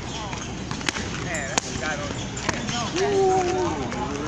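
Voices calling out, with a long drawn-out call near the end as the loudest sound, and three sharp knocks spread across the first half.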